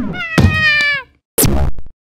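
A cat-like meow: one drawn-out call of about a second that drops in pitch at the end. Near the end comes a short, noisy cartoon sound effect, then silence.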